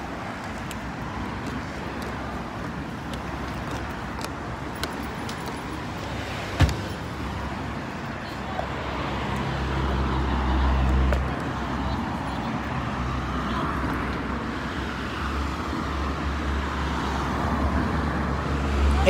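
Road traffic: steady traffic noise, with a motor vehicle's low engine rumble coming in about halfway through, loudest shortly after, and carrying on to the end. A single sharp knock a little over a third of the way in.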